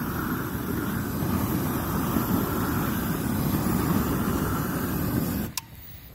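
GrillGun high-power propane torch burning at full flame, a steady rush of burning gas, as it is swept over weeds and clover to scorch them. The sound drops away sharply about five and a half seconds in.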